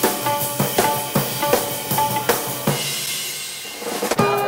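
Music led by a drum kit: a steady beat of about two and a half hits a second with short pitched notes, then a ringing cymbal wash from about three seconds in.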